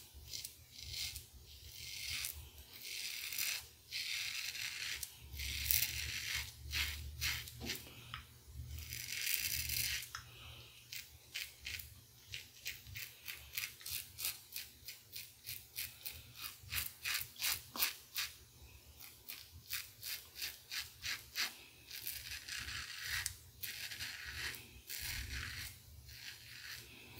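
Merkur 34C double-edge safety razor with a Voskhod blade scraping through two days' stubble under lather. Some longer strokes come first, then a quick run of short strokes, about three or four a second.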